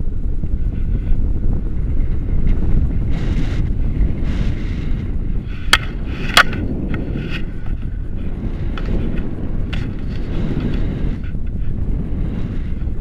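Wind buffeting the microphone of an action camera on a selfie stick during paraglider flight: a steady low rumble. Two sharp clicks come a little past the middle.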